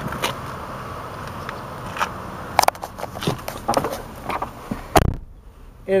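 Handling noises: scattered clicks, scrapes and rustles as someone moves into a car's seat, over a steady outdoor background hum. A single low thump about five seconds in, after which the outside hum drops away and it goes quiet.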